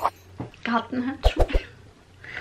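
A woman speaking German in short phrases, broken by two quick sharp bursts about a second and a half in.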